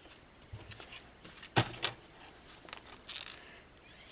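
Junk journal pages being handled and turned: light paper rustling with two sharp taps about a second and a half in, the first the louder.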